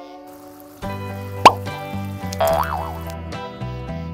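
Cheerful background music, with a short, sharp rising 'plop' sound effect about a second and a half in, the loudest moment, and a wobbling up-and-down tone a second later.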